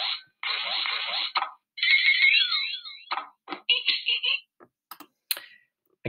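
TumbleBooks e-book player's intro sound effects as its logo animates in: a short whoosh, a stretch of falling electronic tones, a quick run of chirpy beeps, then a few clicks.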